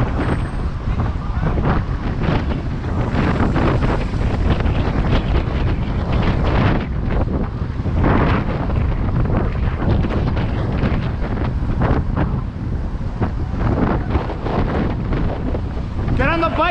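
Loud wind buffeting the action camera's microphone as the bike rolls along, a constant low rumble that swells and fades in gusts.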